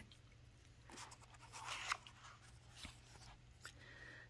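Faint papery rustle of a hardcover picture book's page being turned by hand, with a couple of soft clicks.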